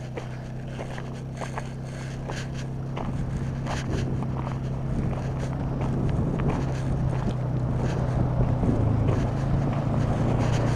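Side-by-side utility vehicle's engine running at a steady pitch, growing louder as it approaches, with footsteps on loose gravel in the first few seconds.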